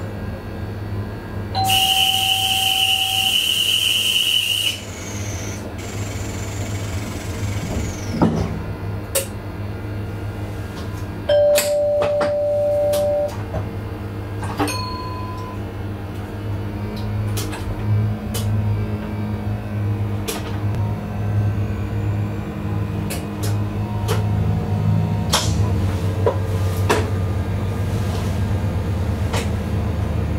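Train cab standing at a station: a steady low hum from the train, a loud hissing burst with a high steady tone about two seconds in, lasting about three seconds, and a two-tone beep lasting about two seconds around eleven seconds in, with scattered sharp clicks. The hum grows louder in the second half as the train gets under way.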